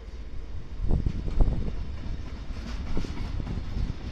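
Freight train wagons rolling past on the track: a steady low rumble of wheels on rail, with a few heavy knocks as wheels cross rail joints.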